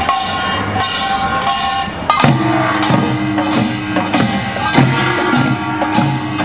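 Korean pungmul percussion troupe playing: sogo hand drums and larger drums struck with sticks in a quick, driving rhythm, with ringing tones sounding over the strokes. About two seconds in, a lower, sustained ringing tone joins in.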